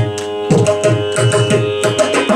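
Mridangam playing a fast run of strokes, thinning briefly early on and then picking up again, over a steady drone tone.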